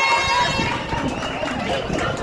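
Crowd of runners setting off in a footrace, many feet pounding on asphalt amid spectators' voices and calls. A held high tone from before the start fades out about half a second in.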